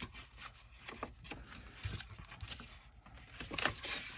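A sheet of patterned paper being handled and refolded by hand: irregular soft rustles, rubs and light taps as flaps are folded and tucked under, with a busier cluster near the end.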